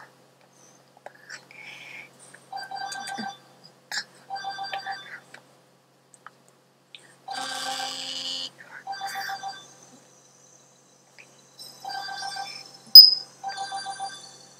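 Electronic phone ringtone: a rapidly pulsing, trilling tone in short bursts about a second long, repeated several times, with one buzzier, longer burst near the middle. A sharp click, the loudest sound, comes about a second before the end.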